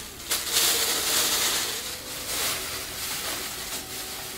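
A thin plastic shopping bag rustling and crinkling as it is handled.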